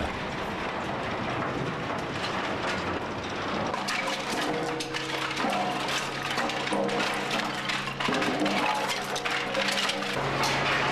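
Timber offcuts clattering as a conveyor tips them into a charcoal retort, over steady factory machinery noise. From about four seconds in, background music with long held chords plays over the clatter.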